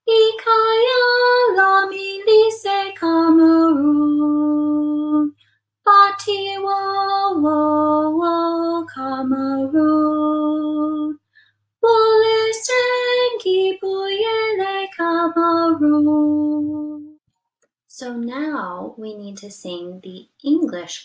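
A woman singing a verse in Zulu solo, in three phrases of held, stepping notes with short breaths between. She breaks into speech near the end.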